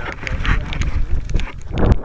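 Handling noise and wind buffeting picked up by a keychain camera's microphone on a model glider being carried: irregular clicks and knocks over a low rumble, with a louder bump near the end.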